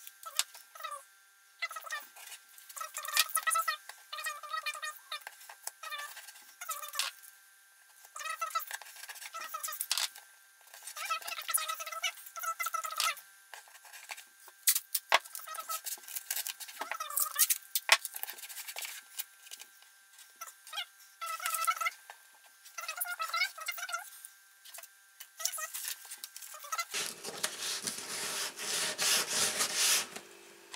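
Masking tape pulled off the roll and torn in a series of short, squeaky rips while the guitar top around the bridge is taped off. Near the end, a steady rasping scrape of sandpaper working the wooden bridge.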